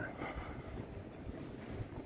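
Low, uneven rumble of wind buffeting a phone's microphone outdoors, with no distinct events.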